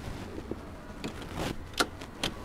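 Concorde throttle levers clicking and knocking in their quadrant as a hand tries to push them forward against their lock; they are locked and do not move. A few short clicks, the sharpest near the end.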